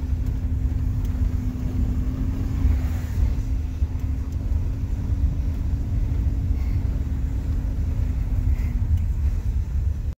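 Van driving down a steep hill, heard from inside the cab: a continuous low rumble of engine and road, with a steady hum that fades out near the end.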